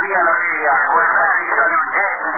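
Men's speech received over a shortwave radio on the 45-metre band. The voices are narrow and thin with no treble, as heard through the receiver, and run on without a break.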